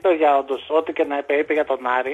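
Speech only: a man talking continuously through a narrow-band telephone line, as on a radio phone-in.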